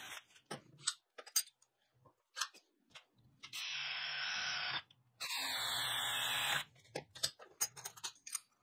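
Power drill boring through a thin 1.6 mm steel hinge blank held in a vise: two steady runs of cutting noise, each over a second long, with a short gap between, after a few scattered small clicks.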